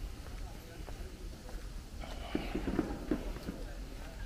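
Footsteps on stone paving, irregular knocks, with indistinct voices of people around that are loudest a little after halfway.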